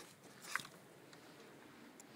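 A single faint click about half a second in, then a faint hiss close to silence.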